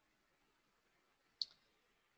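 A single short click of a computer mouse button, about one and a half seconds in, against near silence.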